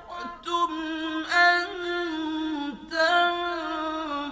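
A solo voice reciting the Quran in a melodic chanted style, holding long notes with ornamented glides in pitch and pausing briefly between phrases.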